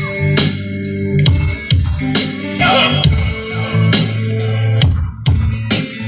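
Dance music played loud through a sound system of horn-loaded top cabinets on bass boxes: heavy sustained bass notes under a steady beat of about two drum hits a second.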